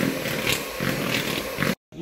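Electric hand mixer running, its beaters churning a thick butter-and-sugar mixture: a steady motor hum with irregular louder churning surges. It cuts off suddenly near the end.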